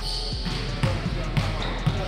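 A basketball dribbled on a gym floor, with about three bounces half a second apart.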